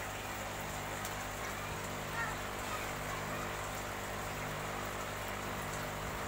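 Steady watery hiss and light splashing in a shallow fish tub as a hand moves through the water, over a low steady hum.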